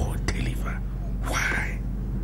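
A man's voice as a short breathy whisper about halfway through, over a steady low hum.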